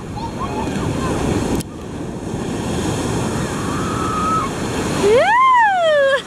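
Shallow surf washing and churning in a steady rush, with wind buffeting the microphone. Near the end a child gives one loud "Woo!" that rises and then falls in pitch as the foam washes over.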